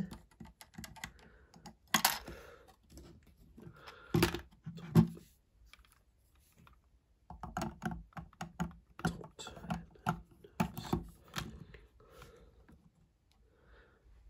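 Lego plastic pieces clicking and knocking as they are handled and fitted together: a scatter of small, sharp clicks, busiest from about seven to eleven seconds in.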